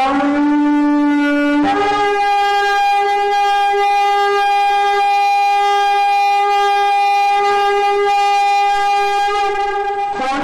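A long blast on a horn: a lower note for under two seconds, then a jump up to a higher note that is held steady for about eight seconds.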